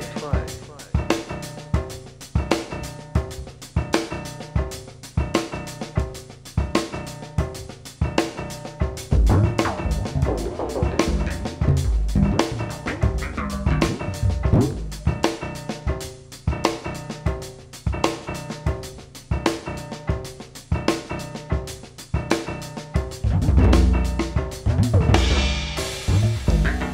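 Jazz piano and drum kit playing a busy, evenly pulsed pattern of repeated strikes, with heavier low notes swelling in twice.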